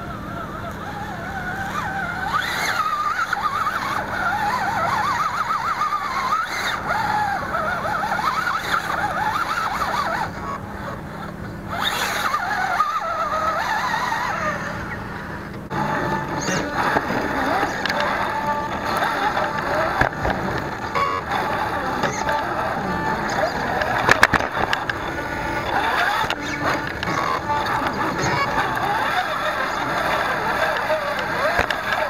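Electric motor and geared drivetrain of a Vaterra Ascender RC rock crawler whining, the pitch wavering up and down as the throttle is worked over rocks. The sound changes abruptly about 16 seconds in.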